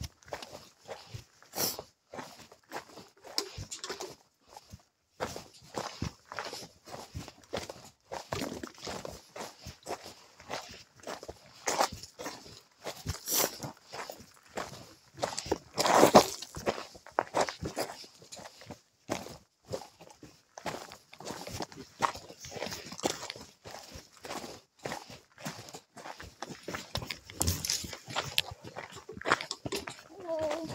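A hiker's footsteps on a mountain trail, an irregular run of scuffs and clicks as he walks downhill. One louder knock comes about halfway through.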